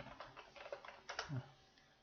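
Faint computer keyboard typing: a quick run of key clicks in the first second or so. A short hum from a man's voice follows a little past the middle.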